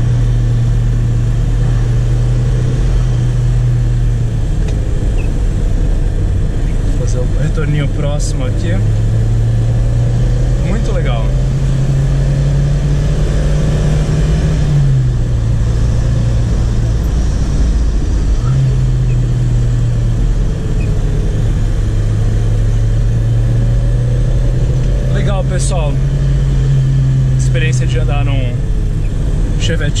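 Chevrolet Chevette 1.6 four-cylinder engine pulling under load, heard from inside the cabin, its note climbing slowly. About halfway through the engine note drops away for a few seconds, then it picks up and climbs again, easing off near the end.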